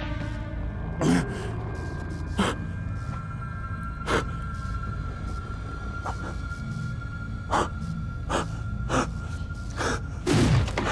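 Suspenseful horror film score: a low drone under a long held high note, broken by about eight short, sharp hits at uneven intervals.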